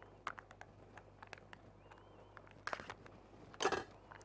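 Faint clicks and plastic handling noises from a yogurt cup whose lid will not come open, with two louder rustles near the end.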